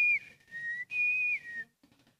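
A man whistling a short idle tune: four held notes alternating high and low, stopping shortly before the end.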